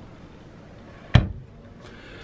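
A wardrobe door shutting with a single sharp knock about a second in.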